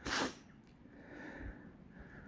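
A kelpie gives one short, breathy snort right at the start.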